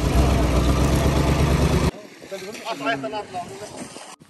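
Engine of an old water-tanker truck running close by, loud with a deep rumble, cutting off suddenly about two seconds in; quieter outdoor talking follows.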